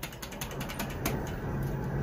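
ThyssenKrupp hydraulic elevator's doors being closed by the door-close button: a rapid run of mechanical clicks in the first second, then a steady low hum from the door mechanism.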